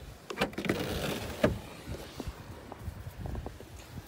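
Rear liftgate of a Ford Escape being unlatched and opened: a few clicks from the release and latch, a second or so of rustling noise as the gate goes up, and a sharper click about a second and a half in.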